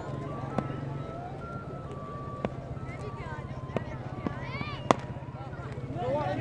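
Faint shouts and calls from players and onlookers on the field, over a steady low hum, with a few sharp clicks, the loudest near the end.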